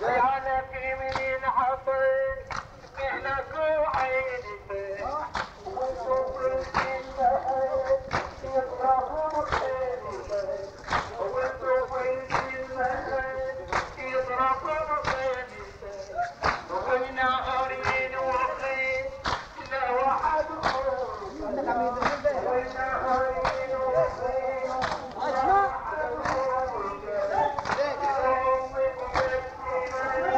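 Male voice chanting a Shia mourning latmiyya over mourners beating their chests (latm) in a steady rhythm of sharp slaps.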